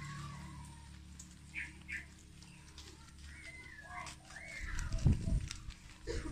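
Rabbits feeding on fresh pegaga (gotu kola) leaves, with close rustling and munching noises loudest in the last second or so. A few short gliding chirp calls sound in the background earlier on.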